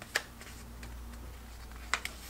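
A sheet of paper being folded and creased by hand on a tabletop: faint rustling with two short crisp clicks, one just after the start and one near the end.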